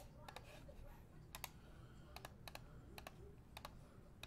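Computer keyboard keys clicking: about a dozen separate keystrokes, some in quick pairs, over a faint background hum.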